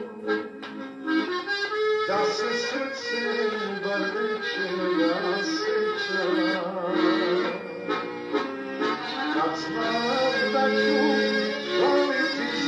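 Live recording of a Serbian folk song, with the accordion prominent in the melody.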